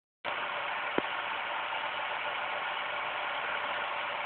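Steady hiss of background noise, with a single short click about a second in.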